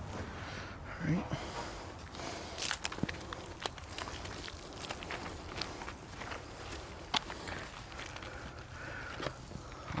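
A wash mitt rubbing over a foam-covered car bumper, with scattered light clicks and squishes and footsteps on wet, soapy pavement.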